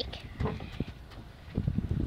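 Low rumble of wind and handling noise on a phone's microphone, with a few dull knocks.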